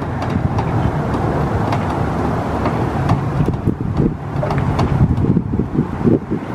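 Wind buffeting the microphone outdoors, a loud, irregular low rumble with no speech.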